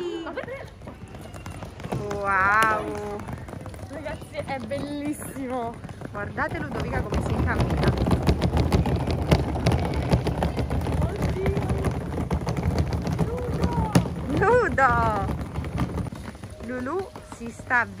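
Hard suitcase wheels rolling over brick paving, a dense rattling clatter that builds about six seconds in and fades out near the end.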